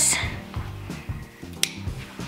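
Background music with a steady low bass line, and one sharp snip of scissors cutting macrame cord about one and a half seconds in.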